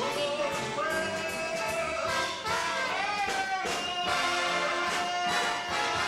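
Live big band swing music: the brass section plays over a steady drum beat, settling into a long held note in the second half.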